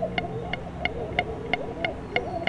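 Tea bubbling in a steel pot on a stove, with short wavering blips over a low steady hum. A sharp, even ticking runs through it at about three ticks a second.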